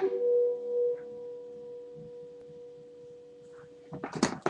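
Electric guitar, a Gibson SG, letting its last note ring out after the playing stops: one steady tone with a few faint overtones that fades away slowly.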